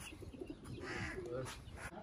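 Domestic pigeons cooing faintly, with faint voices in the background.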